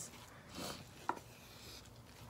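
Wooden spoon stirring and scraping cooked quinoa in a saucepan, faint: a soft scrape about half a second in and a short click just after a second.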